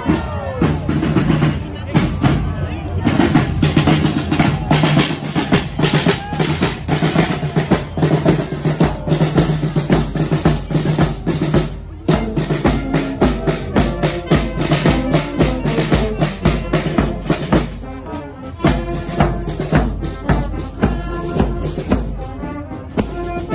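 Carnival marching band playing: a big bass drum and snare drums beating a steady march rhythm under trombones and trumpets. The music drops out briefly about halfway through, then the drums and brass carry on.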